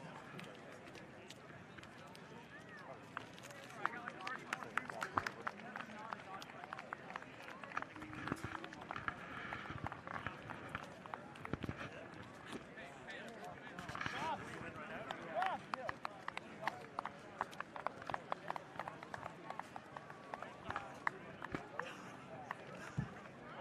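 Indistinct voices of many players talking at once in a handshake line, with a string of sharp hand slaps and claps that grows busier a few seconds in.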